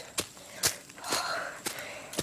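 Footsteps on a woodland path, about two steps a second, with a breath between them.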